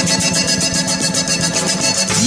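Music with no voice: a new track cuts in abruptly, with a fast, even beat over held chords.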